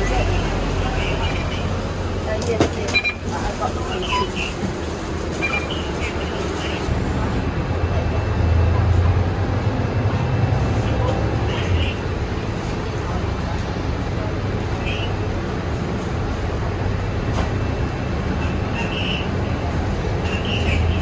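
Mercedes-Benz Citaro city bus idling at a stop, heard from the cabin: a steady low engine hum that swells for a couple of seconds about eight seconds in. Short high beeps sound every few seconds over the hum and passengers' voices.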